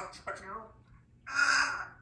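African grey parrot vocalising: a brief speech-like mumble at the start, then a louder, harsh squawk about a second and a half in.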